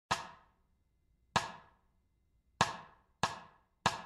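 A count-in at 96 beats per minute: sharp percussive clicks, two slow ones a beat-pair apart, then three quicker ones on the beat, each dying away fast.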